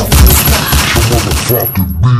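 A dense, rapid string of sharp bangs over a low bass line.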